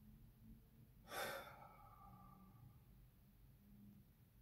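A person's single short sigh about a second in, against near silence.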